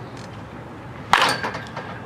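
A baseball bat striking a pitched ball during batting practice: one sharp crack about a second in, with a brief ring after it.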